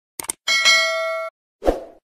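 Subscribe-button animation sound effects: a quick double click, then a bright bell-like ding that rings for under a second and stops abruptly. A short low thump follows near the end.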